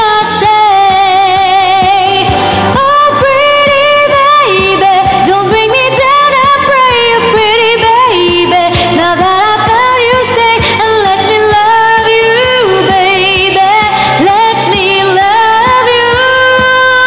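A woman singing long, held notes with vibrato over a pop backing track.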